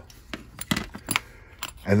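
A few sharp, light metallic clicks as the field-stripped Beretta Pico pistol's stainless steel slide and frame are handled and set down.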